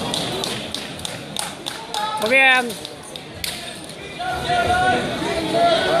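Shouting voices in a large sports hall: one loud shout about halfway through, further calls near the end, over background chatter, with a scattering of sharp taps in the first half.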